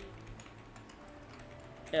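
Faint, quick, irregular clicking of a computer keyboard as a search is typed.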